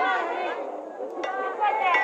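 Talking voices over crowd chatter, the sound of a broadcast softball game. There is a brief lull about a second in.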